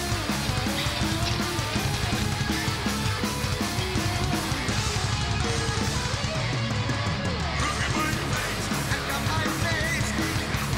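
Live thrash metal band playing an instrumental passage: distorted electric guitars riffing over fast, steady drums, with a higher wavering guitar line coming in near the end.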